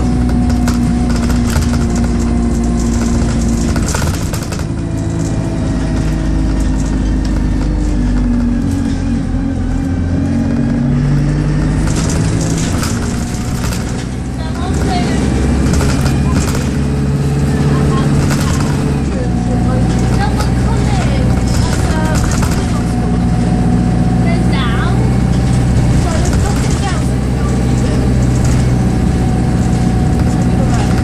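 Diesel engine of a service bus heard from inside the passenger saloon as the bus drives along, its note stepping up and down in pitch several times through the gear changes, with light rattles and knocks from the bodywork.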